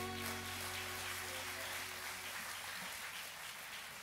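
The last chord of an acoustic guitar song ringing out and fading away over the first couple of seconds, leaving faint room noise.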